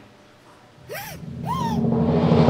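Cartoon character's voice making two short squeaky cries, each rising then falling in pitch, about half a second apart. A low swelling sound builds underneath from halfway through.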